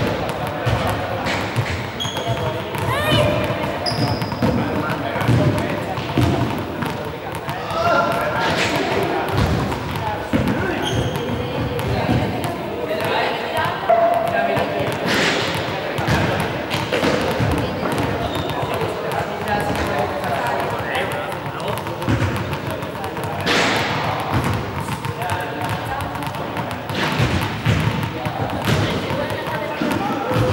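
Small balls bouncing and thudding repeatedly and irregularly on a sports-hall floor, the knocks echoing in the large hall.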